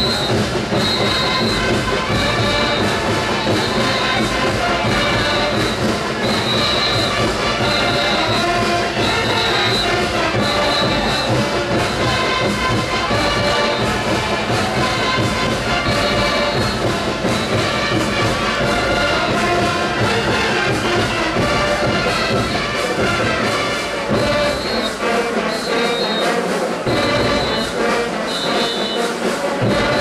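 A brass band playing a steady, loud dance tune for folkloric dancers. A short high note repeats throughout, and the bass thins out in stretches from about 24 seconds in.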